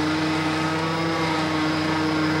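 Tractor engine running steadily at a constant pitch.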